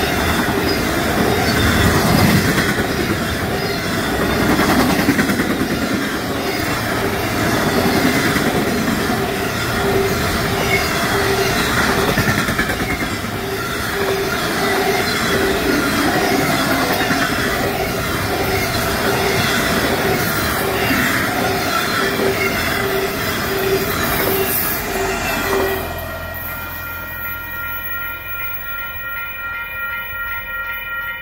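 Intermodal freight cars rolling past close by: a loud, steady rumble of steel wheels on rail with a regular repeating beat from the wheels. About 26 s in the sound cuts to a quieter scene where a distant train horn sounds steadily.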